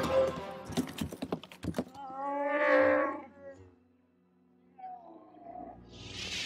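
Film soundtrack of a lightsaber fight: a quick series of sharp lightsaber swings and strikes in the first two seconds. Then a loud drawn-out call that rises and falls in pitch, over orchestral score.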